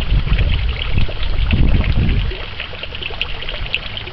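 Steady trickling and splashing of pond water, with low rumbling gusts of wind on the microphone for the first two seconds or so.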